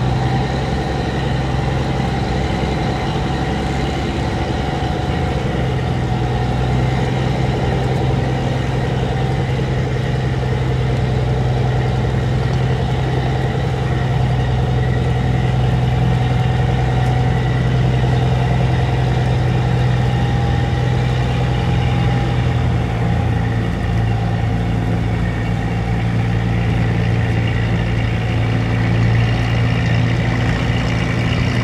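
Heavy diesel engine of a loaded cargo barge running at full throttle as it pushes against the current through a sluice gate, a loud, steady deep drone.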